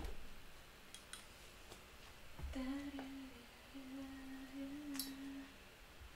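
A person humming one low held note that wavers slightly, with a short break, for about three seconds. A sharp click at the very start, a knock about two and a half seconds in and a click near five seconds come from light handling at the table.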